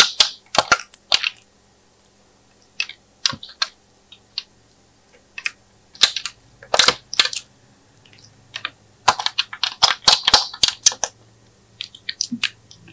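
Clicks and crackles of a clear plastic palette tray in short bursts, as fingernails pry lip-shaped pieces out of its compartments and set them onto slime, with quiet gaps between.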